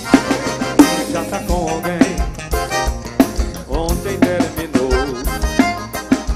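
Live forró band music: a drum kit beat under a pitched melody line.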